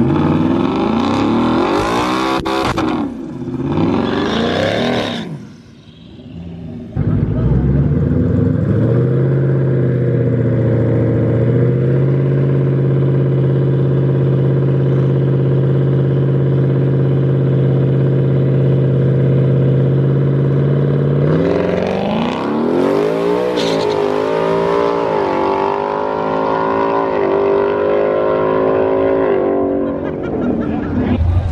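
Ford Mustang GT's 5.0 V8 revving hard in a burnout, then held at a steady rpm on the start line for about fourteen seconds. About 21 seconds in it launches and accelerates through several gears, each a rising pitch that drops at the shift.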